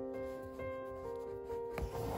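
Soft piano background music, with a short rubbing sound and a click near the end as embroidery thread is drawn through the hooped fabric.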